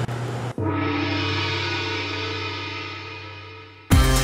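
A single long gong-like tone with many overtones, starting suddenly about half a second in and fading slowly over about three seconds. Louder rhythmic music cuts in abruptly near the end.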